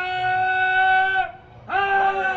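A man's voice holding a long, steady sung note in Shia majlis recitation. The note tails off about 1.3 seconds in, and a second held note begins near the end with a quick upward slide.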